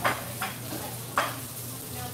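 A metal fork scraping against a plate three times: once at the start, again about half a second later, and a louder scrape just past a second in, over a steady low hum of room noise.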